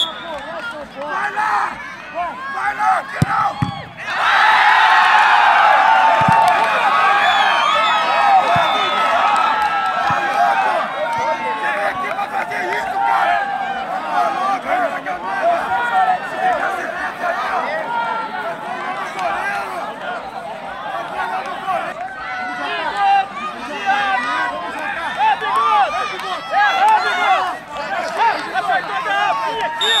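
A crowd of spectators and players shouting and talking over one another in an open-air football ground, getting suddenly louder about four seconds in and staying loud, reacting to a penalty just scored in a shootout.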